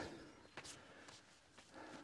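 Near silence, with one faint tap about two-thirds of a second in.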